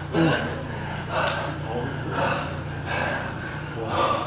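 Two ssireum wrestlers straining against each other in a clinch, breathing hard: heavy, gasping breaths come about once a second over a low steady hum.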